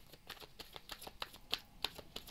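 A deck of oracle cards being shuffled by hand: a quick, irregular run of soft card-edge clicks.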